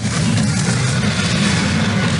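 Loud video-game fight audio: a dense, steady rumbling noise, heaviest in the low end, with no speech.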